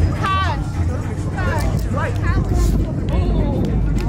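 Music with a heavy, steady bass line playing loudly, with people calling out and whooping over it.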